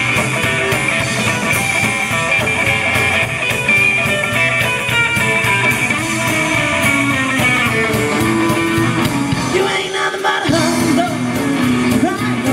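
Live band playing amplified through the stage PA: electric guitar, upright bass and drum kit, with a singer. Near ten seconds in the bass and drums drop out for about half a second, then the band comes back in.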